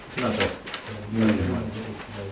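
Speech: a man's voice with short spoken sounds and an "mm", and a brief crisp sharp noise near the start.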